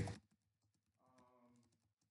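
Near silence, with faint, scattered clicks of typing on a computer keyboard.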